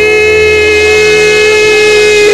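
An organ holding one loud, steady chord, its notes sustained without wavering or any beat.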